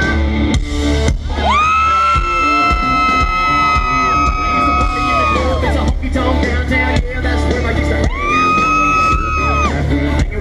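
Live amplified country-rock band playing an instrumental break: an electric guitar lead holds two long notes that bend up into pitch, one early on for about four seconds and a shorter one near the end, over steady drums and bass. Crowd cheers and whoops mix in.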